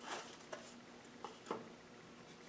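A few faint clicks and knocks as thin wooden log slices are handled and set down as a stack on the band saw's metal table.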